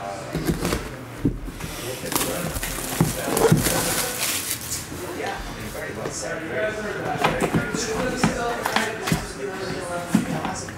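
Plastic shrink wrap crinkling and tearing as a sealed trading-card box is cut open and unwrapped, with small clicks and knocks as the box is handled. The crinkling is strongest a couple of seconds in.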